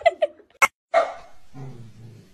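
A corgi barking once, about a second in, after a sharp click, with a lower drawn-out sound following it.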